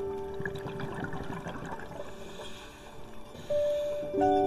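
Soft piano music: a held note fades away at the start, leaving a few seconds of bubbling, trickling water sound before a new piano note sounds near the end.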